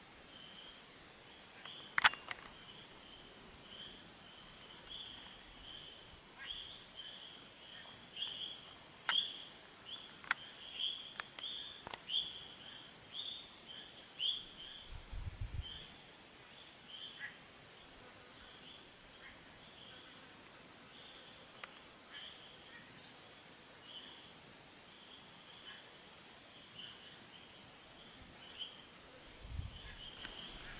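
Faint outdoor ambience of small birds chirping: a steady run of short high chirps at one pitch repeats all through, with scattered higher calls above it. A few sharp clicks stand out, the loudest about two seconds in, and there is a brief low rumble about halfway through.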